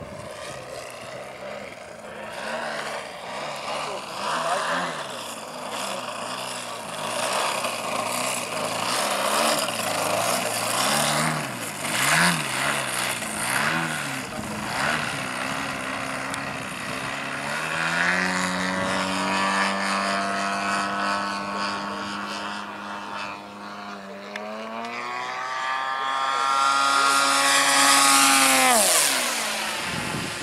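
The GP 123 engine of a large RC Extra aerobatic model plane and its propeller. For the first half the pitch wavers up and down as the throttle is worked in a low nose-up hover, then the engine runs at a steady pitch. Near the end it rises in pitch and loudness, then falls away sharply.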